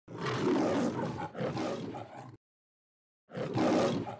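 Roaring as in the MGM lion logo: a roar of about two seconds that cuts off abruptly, then after a second of silence a second roar begins near the end.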